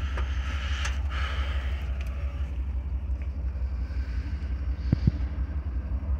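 Truck engine idling steadily, a low, even purr, running good after its repair. Two light knocks about five seconds in.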